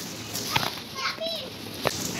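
Indistinct voices over a steady low hum, with two short sharp clicks, one about half a second in and one near the end.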